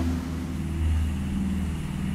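Motor yacht's engines running steadily underway, a low, even drone.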